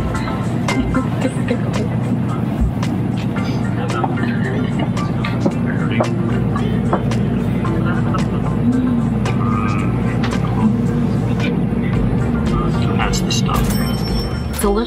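Steady low rumble of a Shinkansen bullet train cabin at speed, under background music, with scattered small clicks.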